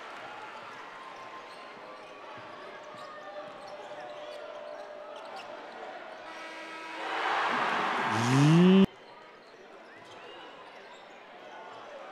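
Basketball game in an arena: low crowd ambience with a ball bouncing faintly on the hardwood. About seven seconds in the crowd noise swells into cheering, with a voice rising in pitch over it. The sound cuts off abruptly just before nine seconds at an edit.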